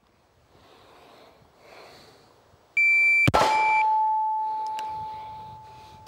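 A shot timer's high electronic start beep, then about half a second later a single loud pistol shot. The shot is followed by a steady ringing tone from the hit IPSC steel target that slowly fades.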